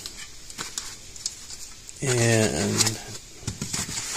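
Faint rustling and light clicks from a plastic-wrapped LED light bar and its foam packing being handled in a cardboard box, with a short spoken phrase about halfway through.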